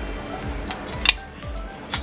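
Kitchen utensils in a woven basket clinking against each other as they are handled, with a few sharp clinks, the loudest about a second in and near the end, over soft background music.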